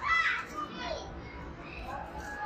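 Young children's voices: a loud, brief, high-pitched child's cry right at the start, another short child's vocalization about a second in, over the steady chatter of children playing.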